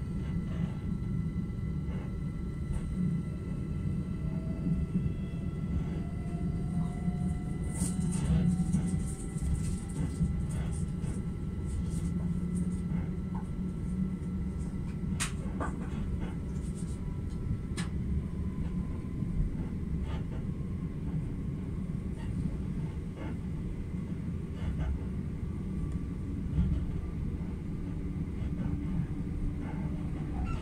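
A Southeastern electric passenger train running at speed, heard from inside the carriage: a steady low rumble of wheels on track, with a faint whine that slowly rises in pitch and occasional clicks and rattles.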